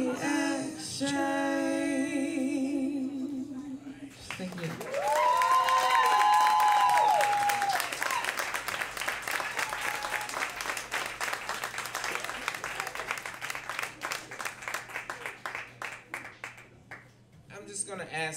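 A singer holds a final note with a wavering vibrato, then the audience breaks into applause with a few loud whoops and cheers. The clapping goes on steadily and thins out near the end.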